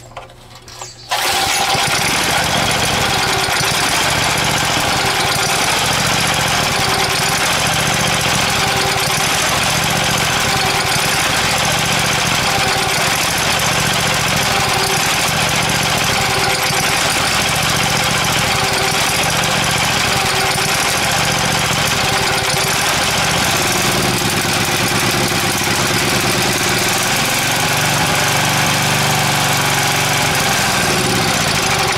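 Small Craftsman Eager 1 3.8 hp single-cylinder edger engine starts about a second in and then runs steadily, still cold and not yet warmed up after a carburetor cleaning; its speed wavers near the end.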